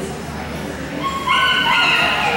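A dog whining in a high, held voice for about a second, starting about a second in and becoming louder. It is the loudest sound and rises over a murmur of voices in the background.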